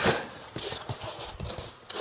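Styrofoam packing block rubbing and scraping against a cardboard box as it is lifted out, with an irregular rustle and a few small knocks.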